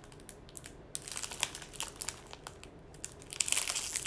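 Gift packaging crinkling and rustling as it is handled and opened, in a string of irregular crackles that grow busier about a second in and again near the end.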